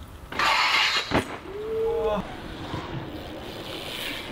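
BMX street riding: a scraping grind lasting under a second, a sharp landing smack just after, then a short shout, with rolling tyre noise after.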